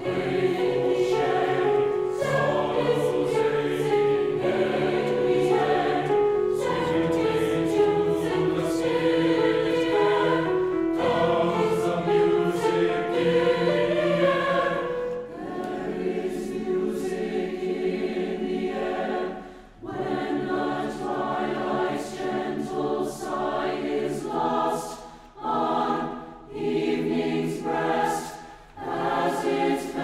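Mixed choir of women's and men's voices singing in parts. Long held chords give way about halfway through to shorter phrases with brief breaks between them.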